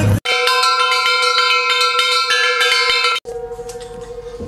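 Metal bell-like percussion ringing and struck repeatedly, so that several clear pitches hang on together. It starts abruptly about a quarter second in and cuts off sharply about three seconds in, leaving one fainter ringing tone.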